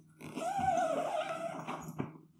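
A large dog gives one long, wavering vocal call lasting about a second and a half.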